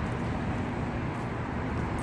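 Steady wash of water running over the stepped rings of a spiral fountain, over a low, steady city hum.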